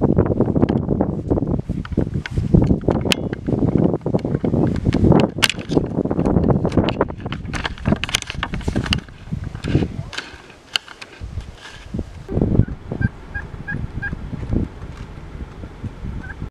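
A flock of wild turkeys calling and gobbling, mixed with rustling and knocking noise from the camera moving.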